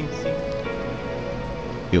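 Meditation background bed: steady held tones of a binaural-beat track over an even hiss of noise, with no melody standing out.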